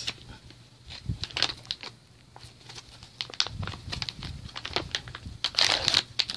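An MRE chocolate chip cookie pouch crinkling in scattered sharp crackles as it is handled and worked open by hand, loudest near the end.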